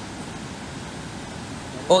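Steady rush of a forest stream, an even hiss with no rhythm. A man's short exclaimed 'oh' cuts in near the end.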